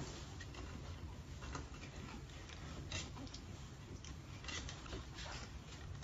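Faint, irregular clicks and scratches of puppies' claws scrabbling on a glossy tile floor, over a low steady hum.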